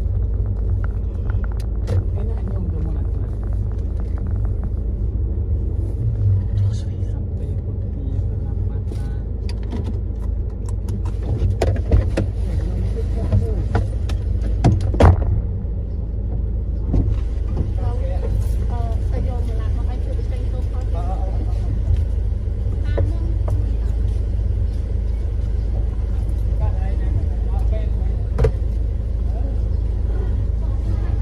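Steady low engine and road rumble heard from inside a car creeping along a dirt road and then idling, with a few sharp knocks around the middle.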